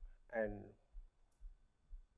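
A man says one word, then pauses; the pause holds a few faint clicks.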